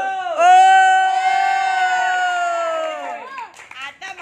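A man's long drawn-out shout, held on one pitch for about three seconds before trailing off: a kickboxing referee calling out the result of a bout.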